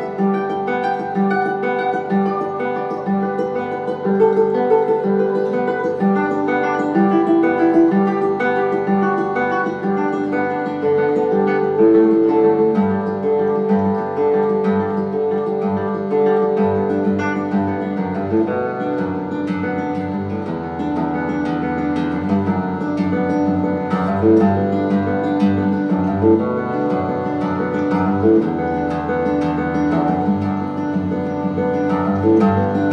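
Solo guitar playing a continuous stream of plucked, ringing notes, with deeper bass notes joining about two-thirds of the way through.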